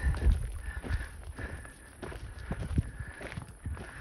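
Footsteps crunching on a rocky, gravelly trail, an uneven run of short scuffs and steps.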